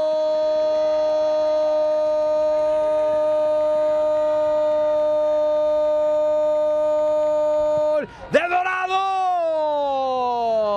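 Spanish-language football commentator's drawn-out goal call, one voice holding a single steady note for about eight seconds. After a brief break near the end, a second call slides down in pitch.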